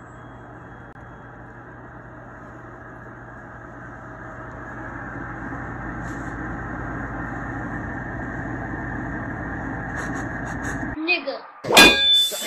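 Hooded salon hair dryer running: a steady blowing whoosh with a low hum. It grows louder over the first several seconds and cuts off suddenly about a second before the end, where a brief loud burst of voices follows.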